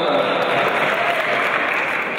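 Audience applauding after a takedown, with some voices over it. The clapping dies down a little near the end.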